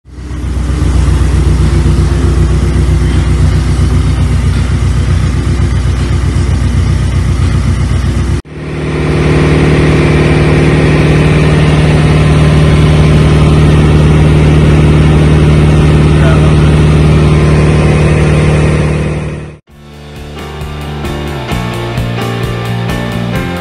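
Ford 2.5 Duratec four-cylinder engine, rebuilt with fast-road camshafts and forged pistons, running loud at steady revs on a rolling-road dyno. A hard cut about eight seconds in leads to a second stretch held at a higher pitch, which fades out a couple of seconds before the end as music comes back.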